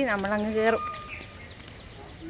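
A person's voice speaking, with one drawn-out vowel that stops under a second in, leaving a low outdoor background.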